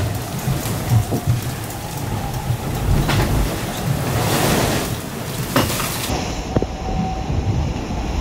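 Loud, continuous rumble of an IMOCA 60 racing yacht's carbon hull driving through heavy seas, with rushing water and a few sharp knocks from the boat slamming. About six seconds in the sound changes to a duller mix of wind and waves.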